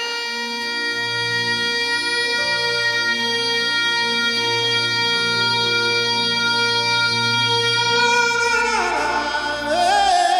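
A male singer holds one long, high, steady note for about eight seconds over soft sustained accompaniment chords and bass, then his voice slides down in pitch near the end.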